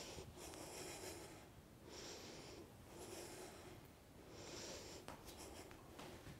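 A woman breathing faintly in and out, several breaths about one a second, with a few light ticks near the end.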